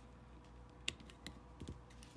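A few faint, light clicks and taps of plastic and metal as an AA battery is taken out of a clear plastic two-cell battery holder, the sharpest click about a second in.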